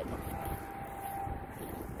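Wind buffeting a phone microphone outdoors, with a faint steady tone that fades out near the end.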